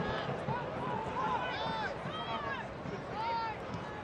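Soccer stadium ambience: a steady murmur of crowd noise with several short, high shouted calls from the pitch or the stands.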